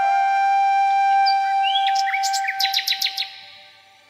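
Background instrumental music: a long held flute-like note with bird-like chirps and quick trills around the middle, fading out near the end.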